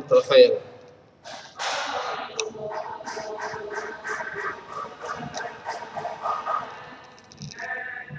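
A student's voice, faint and thin as it comes over an online call, speaking for several seconds between the teacher's turns.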